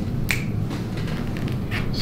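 A single sharp click about a third of a second in and a fainter one near the end, over a steady low room rumble.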